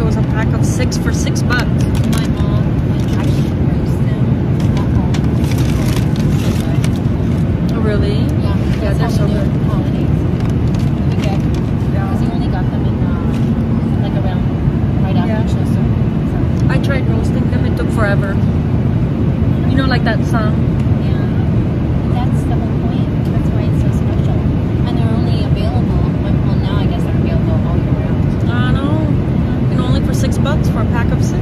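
Steady low rumble of an airliner cabin in flight: engine and airflow noise, even and unbroken.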